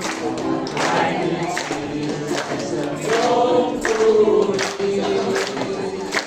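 A mixed group of men and women singing a Chinese song together, accompanied by strummed ukuleles.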